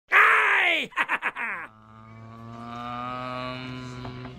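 A voice-like intro sound: a loud yell falling in pitch, then a quick stutter of short cries, then a long steady held note that slowly swells.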